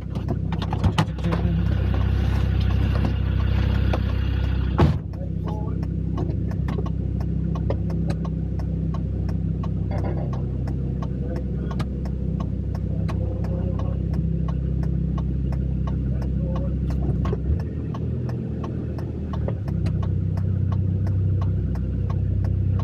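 Land Rover engine running steadily, heard from inside the cabin, with scattered light clicks and rattles. There is a single sharp knock about five seconds in.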